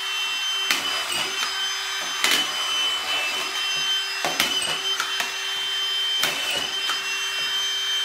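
Hilti SD 5000 cordless collated drywall screwdriver with the SD-M2 magazine, its motor running steadily with a high whine. Several sharp clicks, about every one to two seconds, mark screws being driven into the board and the strip advancing.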